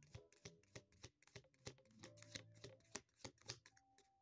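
A deck of tarot cards being shuffled by hand: a quiet, irregular run of quick card clicks and slaps.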